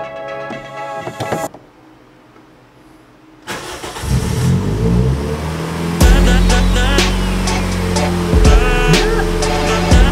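Background music breaks off about a second and a half in. After a short lull, the Toyota Yaris's 1NZ-FE four-cylinder engine cranks, starts and is revved, beginning about three and a half seconds in. From about six seconds in, loud music with a heavy beat plays over the running engine.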